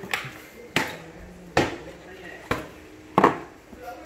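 Plastic mode button of an LED headlamp being pressed repeatedly, giving five sharp clicks a little under a second apart as it steps through its light modes.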